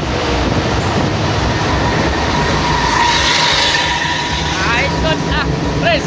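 Steady engine, tyre and wind noise of a coach driving at highway speed, heard from inside its cabin. Brief warbling high tones rise and fall a few times near the end.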